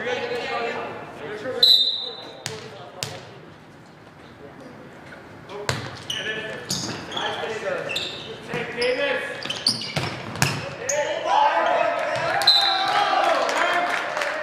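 Volleyball rally in an echoing gym: a referee's whistle about two seconds in, then a string of sharp slaps of the ball being hit. Near the end there is a second short whistle while players shout.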